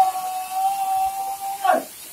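A long shout held on one steady pitch, dropping off near the end, as a work call during a heave.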